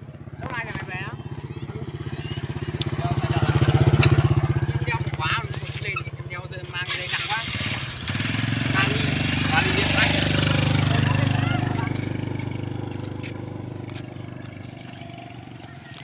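Motorbike engines passing close on a road, one after the other: the first swells and fades about four seconds in, and a second comes up about eight seconds in, stays loud for a few seconds, then fades away.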